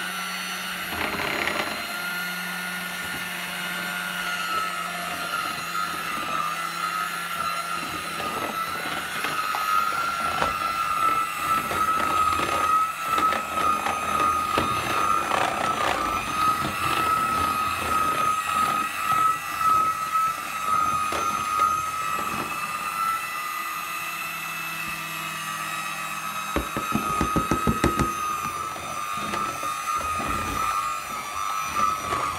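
Proctor-Silex electric hand mixer running with a steady whine, its beaters working flour into banana-bread batter. Irregular clatter from the beaters through the middle and a quick run of knocks near the end.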